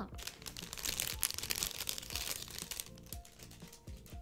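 Clear plastic doll packaging crinkling as the doll is pulled out of its bag, thinning out about three seconds in. Soft background music plays underneath.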